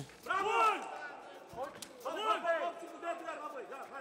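Voices shouting in bursts over a kickboxing bout, with a few sharp smacks of strikes landing, the clearest near the start and about a second and a half in.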